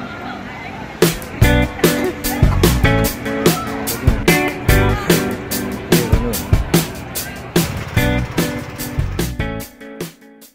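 Music: pitched, sustained instrument notes, with a steady, strong drum beat coming in about a second in and running on, fading near the end.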